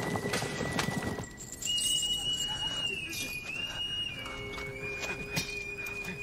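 Horses' hoofbeats of a cavalry retreat, dense for about the first second and then falling away, under a high held note that steps between a few pitches.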